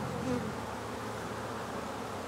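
Honeybees buzzing around an open hive: a steady, even hum of many bees.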